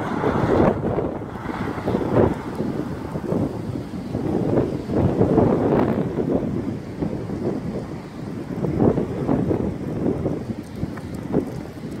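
Strong wind in a dust storm blowing across the microphone, a dense low rumble that swells and dips with each gust.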